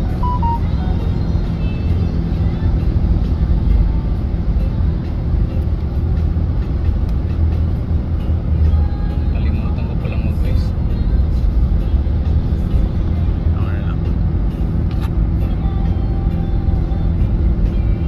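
Steady low engine and road-tyre rumble heard from inside a car driving at speed on an expressway, with faint background voices and music.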